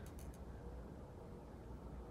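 Faint scratching of a gel pen writing on paper, with a few short ticks near the start, over a low steady hum.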